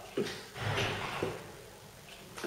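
Faint rustling, with two light knocks about a second apart, as items are rummaged through and handled.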